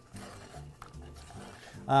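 A white spatula stirring and scraping stiff choux pastry dough and a raw egg around a metal saucepan, quietly, with one light tap a little under a second in.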